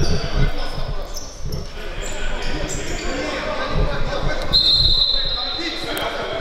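Futsal ball thudding on the hard indoor court as it is kicked and bounces, with players calling out, echoing in a large sports hall. A steady high tone sounds for about a second and a half near the end.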